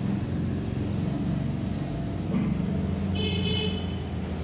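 Motor vehicle engine with a steady low rumble, and a brief horn toot about three seconds in.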